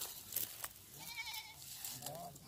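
A goat bleating once, a short quavering call about a second in, faint at this distance.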